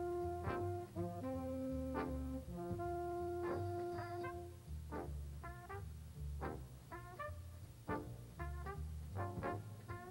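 Big band jazz ensemble of saxophones, trumpets, trombones, piano, bass and drums playing a swing arrangement over a walking bass line. Held horn chords in the first half give way to short, clipped ensemble hits from about halfway through.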